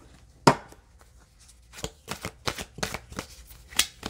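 A deck of cards being shuffled by hand: one sharp tap about half a second in, then from about two seconds an irregular run of quick card slaps and flicks.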